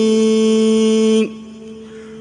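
A chanter's voice in a devotional tasbih holds one long, steady note at the end of a line. It breaks off about a second in, leaving only a faint held tone.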